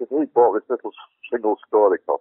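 Only speech: a man's voice talking, as in a recorded conversation, with a brief pause about a second in.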